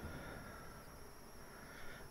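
Quiet room tone with a faint steady high hum; no distinct sound events.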